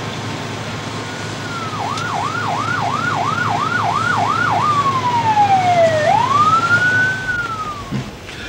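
Emergency vehicle siren, starting about two seconds in with a fast yelp of about three rising-and-dropping sweeps a second, then switching to a slow wail that falls and rises again, over a steady low rumble.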